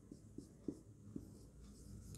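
Marker pen writing on a whiteboard: faint strokes with a few light ticks as the tip lifts and touches down.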